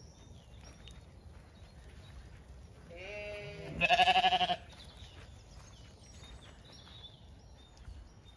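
Zwartbles sheep bleating: a quieter call about three seconds in, then at once a loud, wavering bleat that lasts under a second.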